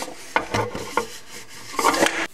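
Rubbing and scraping with several sharp clicks as a wiring harness is worked out of thin metal clips under a motorcycle's rear fender.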